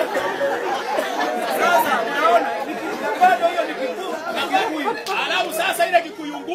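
Several voices talking over one another in a busy chatter.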